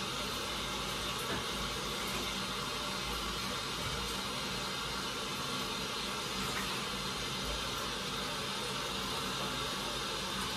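Kitchen tap running into the sink: a steady, even hiss of flowing water while something is washed under it.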